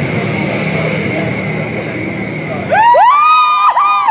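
A low rumbling music track runs and stops about two and a half seconds in. It gives way to high-pitched whooping cheers from onlookers, several voices overlapping, each call rising, holding and falling.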